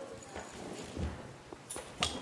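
A few light knocks and clicks at irregular moments, the sharpest near the end: hands handling things on a lectern.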